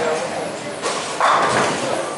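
Bowling alley din, with a loud clatter about a second in, typical of bowling pins being struck, over a background of voices.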